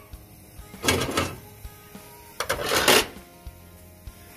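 Metal grill grates of a Son-of-Hibachi grill rattling and scraping as they are lifted off, in two clattering bursts about a second and a half apart.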